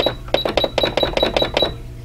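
Computerized sewing machine's keypad beeping: a quick run of about ten short beeps as its buttons are pressed to switch back to a straight stitch and change the stitch length.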